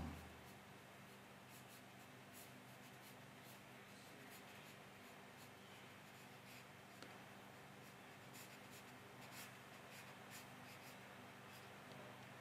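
Faint scratching of a watercolour brush on paper as light brown paint is dabbed on in short, irregular strokes, over a low steady hum of room tone.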